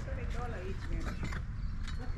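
Light clicks and knocks of housewares being handled and picked up, with a faint wavering, creaky tone and wind rumbling on the microphone.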